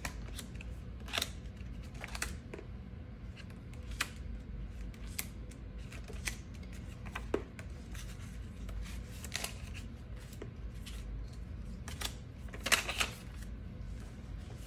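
Paper banknotes rustling and crinkling as dollar bills are pulled out of a clear plastic cash envelope and laid out on a desk, with scattered light clicks and a brief flurry of rustling near the end.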